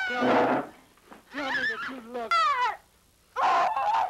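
Four short high-pitched vocal cries with short gaps between them, one sliding clearly downward in pitch.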